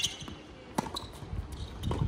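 Tennis ball being struck by rackets and bouncing on a hard court during a rally: sharp pops about a second apart, three in all, with shoe steps on the court between them.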